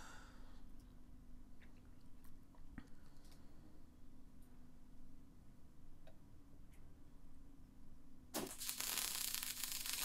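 Faint scattered clicks for about eight seconds, then a MIG welding arc strikes on steel and crackles steadily as a weld run is laid.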